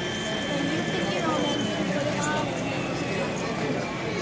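Indistinct voices of people talking in a hall, with a faint steady high-pitched tone that fades partway through and a few light clicks around the middle.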